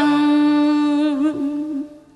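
A Vietnamese traditional opera (cải lương) singer holding the last note of a sung line: one long steady note with a slight waver that fades out near the end.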